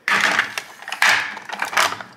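Plastic makeup compacts clattering in a clear acrylic organiser tray as it is handled and set down on a marble countertop, in three bursts: at the start, about a second in, and near the end.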